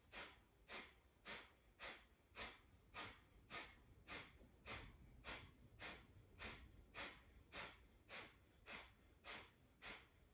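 A woman doing breath of fire: faint, sharp, rhythmic breaths pumped out nearly two a second.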